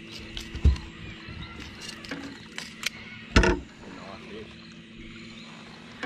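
A dull knock about half a second in and a louder short thump a little past halfway, over a faint steady hum, in a small boat.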